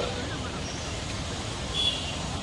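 Steady outdoor background noise with the hum of road traffic. A short, faint high-pitched tone sounds near the end.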